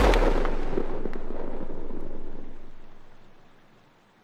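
A single deep cinematic boom hit that rings out and fades away over about three and a half seconds.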